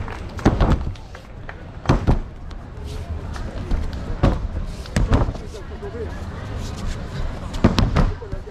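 Judokas being thrown and landing on foam judo mats: five heavy thuds at irregular intervals, one of them a quick double thud.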